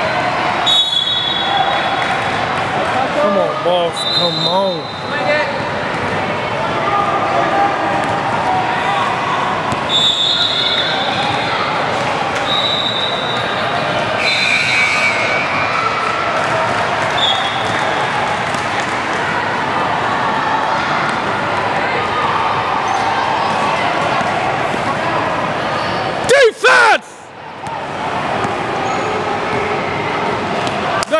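Youth basketball game sounds in a gym: a basketball bouncing and shoes squeaking briefly on the court, over steady crowd chatter that echoes in the hall. A brief loud burst comes near the end.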